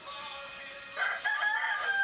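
A rooster crowing once, starting about a second in: a loud call that rises at first and then holds one long, level note.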